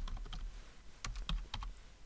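Typing on a computer keyboard: a short run of separate key clicks, clustered about a second in.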